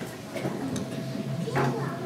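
Low murmur of children's voices with a few light knocks. No melody is heard.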